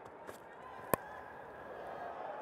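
A single sharp crack of a cricket bat hitting a fast-bowled ball about a second in, over a steady stadium crowd hum.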